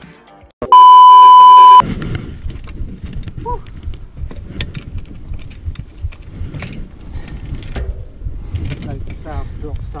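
A loud steady electronic beep, about a second long, near the start. It is followed by low wind rumble on a helmet-mounted camera's microphone, with scattered clicks and rattles, and voices laughing near the end.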